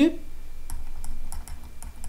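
About half a dozen light clicks and taps, like a stylus pen tapping on a drawing tablet as a number is handwritten.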